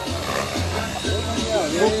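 People talking outdoors with music playing in the background. The voices grow clearer in the second half.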